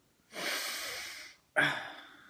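A person's long, noisy breath lasting about a second, followed by the start of a spoken word.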